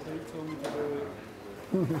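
Soft low voice sounds, then a short burst of laughter near the end.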